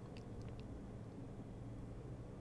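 Faint steady low hum of background noise, with a few brief faint high chirps about half a second in.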